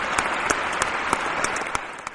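Audience applause: many hands clapping, fading away near the end.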